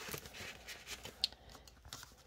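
Faint rustling and light clicks of paper bills and a clear plastic cash-binder envelope being handled, with one slightly sharper tick just past the middle.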